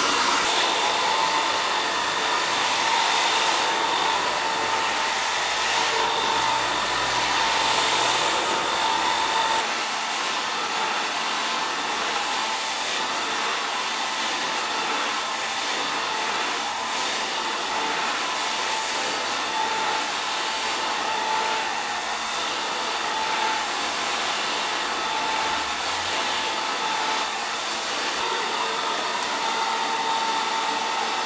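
Hand-held hair dryer running while blow-drying hair: a rush of air with a steady whine. It gets a little quieter about ten seconds in.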